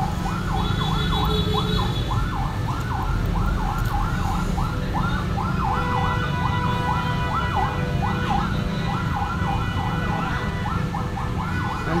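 A siren-like electronic wail sweeping rapidly up and down, about two to three sweeps a second, over a steady low rumble.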